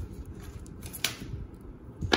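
Faint handling noise as a plastic model part is moved in the fingers, with one sharp click about a second in.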